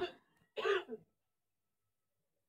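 A person briefly clearing their throat, one short burst about half a second in.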